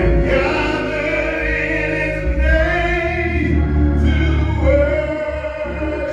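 Gospel song sung by a man on a microphone, with other voices joining in and organ accompaniment under the voices.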